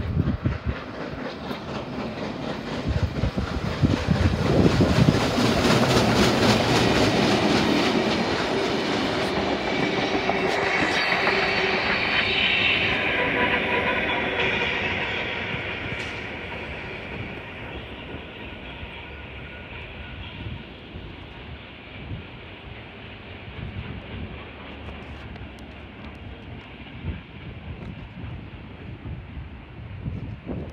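Heritage train hauled by NSW 32-class steam locomotive 3265 with a trailing diesel running through at speed, wheels clattering over the rail joints; loud as it passes, then fading away. A steam whistle sounds about halfway through.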